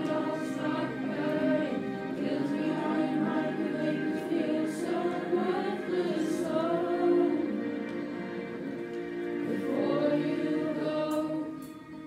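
A class choir singing in unison and parts along with a karaoke backing track, the sound fading down near the end.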